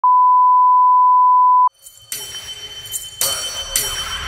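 A loud, steady 1 kHz test tone of the kind that goes with colour bars, held for about a second and a half and cutting off sharply. About half a second later an intro starts, growing louder with several sharp hits and leading into music.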